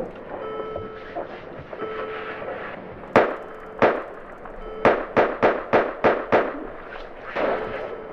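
Gunfire, slowed down: two shots about half a second apart, then a rapid string of about six more.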